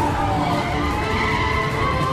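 Car chase sound: vehicle engines with skidding tyres, a squeal wavering down and back up in pitch.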